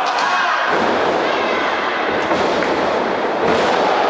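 A wrestler is slammed onto the wrestling ring, giving a heavy thud about a second in, then a few lighter impacts. Crowd voices run underneath.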